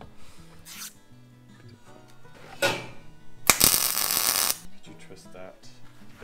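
Background music, with a sudden crackling hiss of an arc welder laying a short bead for about a second in the middle, cut off sharply when the arc stops.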